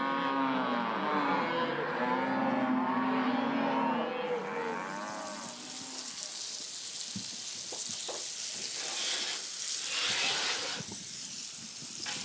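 Cattle mooing, several calls overlapping, for the first five seconds or so. Then a steady sizzle of food frying, with a few faint clicks.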